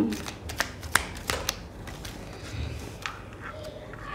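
A deck of oracle cards being shuffled and handled by hand: a quick run of sharp, light card clicks in the first second and a half, then softer, sparser handling.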